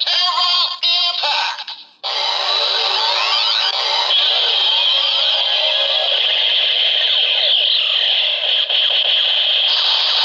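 Toy Zero-One Driver belt's electronic voice calling out the finisher 'Metal Rising Tera Impact!' through its small speaker. From about two seconds in, a long run of its attack sound effects follows: repeated rising electronic sweeps over explosion-like noise, thin and without bass.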